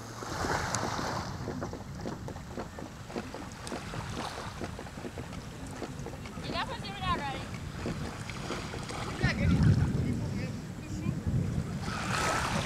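Wind buffeting the microphone in a steady low rumble, swelling louder about nine to ten seconds in, with a short wavering high call about six and a half seconds in.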